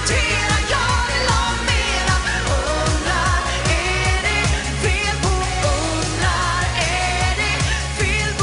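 A woman singing a Swedish schlager-pop song live into a handheld microphone, over a pop band backing with a steady dance beat.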